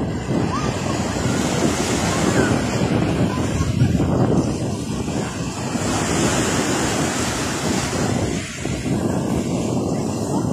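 Small sea waves breaking and washing up a fine-pebble shore, a steady surf with wind buffeting the microphone.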